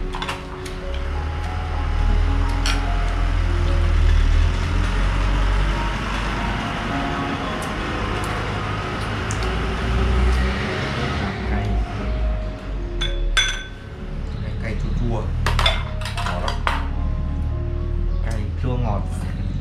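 Spoon and chopsticks clinking against small ceramic bowls as soup is served and eaten, with a cluster of sharp clinks a few seconds before the end. Background music with held notes runs underneath.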